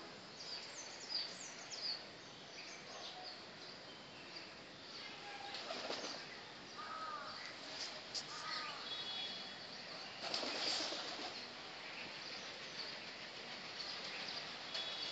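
Outdoor bird sounds: scattered high chirps and a couple of short arching calls over a steady background hiss. Two short rushes of wing flapping come about six seconds in and again near eleven seconds.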